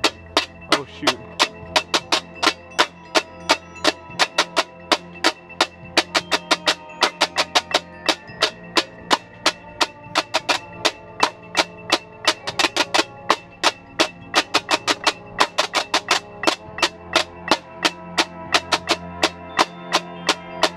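Marching snare drum played close up with sticks in a drumline, a rapid, steady run of sharp strokes several times a second, with the tenor drums playing alongside.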